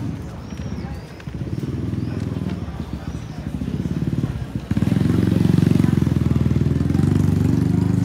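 Small motor scooter's engine running as it rides up and passes close by, growing louder and then jumping up sharply about halfway through and staying loud.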